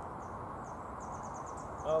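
A small bird twittering: a few thin, high chirps, then a quick run of them in the second half, over steady outdoor background noise.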